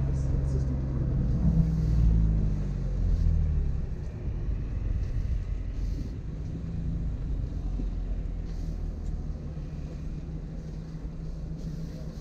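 2018 BMW M3's twin-turbo inline-six heard from inside the cabin as the car rolls at low speed: a fuller engine note with slight changes in pitch for the first few seconds, then a quieter, steady low hum.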